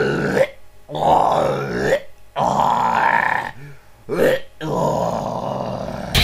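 A man's voice making deep, wordless grunts and groans in five bursts, some short and some about a second long.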